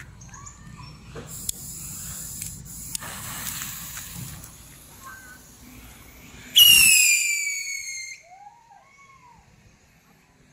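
Lit fuses hissing and crackling faintly for a few seconds, then Dragon whistling rockets lifting off together about six and a half seconds in with a sudden loud, shrill whistle that slides down in pitch and fades out over about a second and a half.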